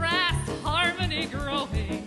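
A woman singing a show tune with a live band of bass and drums. Her voice runs through quick, wavering ornamented notes in the first second or so, then the band carries on alone near the end.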